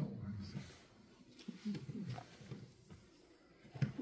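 Faint, indistinct voices: low murmuring in a lecture room between speakers, with the end of one man's sentence at the start and the next speaker beginning just before the end.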